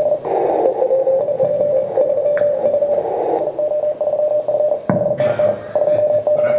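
Morse code from a contest station's HF receiver: a mid-pitched tone keyed on and off rapidly over hiss and other signals, heard through the room's speakers. A sharp click about five seconds in.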